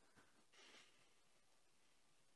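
Near silence: room tone, with a faint click and then a brief soft hiss about half a second in.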